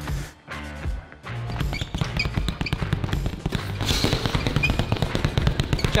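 A rapid, continuous flurry of punches on a heavy punching bag, many blows a second, starting about a second in, heard over background music.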